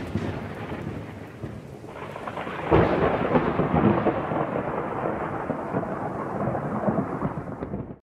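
Thunderstorm sound effect: rain with rolling thunder, and a fresh loud clap of thunder about three seconds in. It cuts off suddenly at the end.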